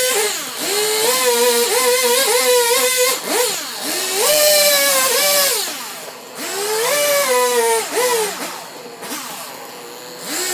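Stihl two-stroke chainsaw cutting into a log for a carving, revved to full throttle in repeated bursts, its pitch falling away between cuts. For the last two seconds it idles more quietly.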